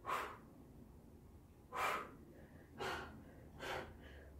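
A woman breathing hard from the exertion of squats with bicep curls: four short, sharp breaths, one right at the start and three more from about two seconds in, roughly a second apart.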